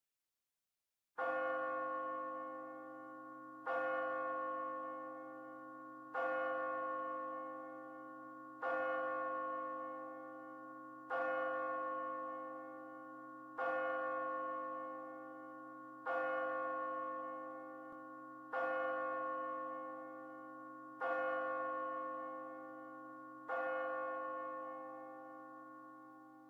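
A single bell tolled ten times at a slow, even pace, about one stroke every two and a half seconds, each stroke ringing on and overlapping the next.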